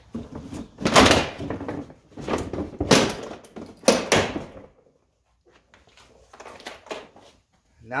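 Factory plastic breakaway fender flare being ripped off a Jeep Wrangler JK's rear fender by hand, its clips letting go. About four loud cracks and pops come in the first four and a half seconds, followed by a few faint knocks.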